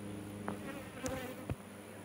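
Honeybees buzzing around an open hive box, a faint, wavering hum, with a few light clicks about half a second, one second and one and a half seconds in.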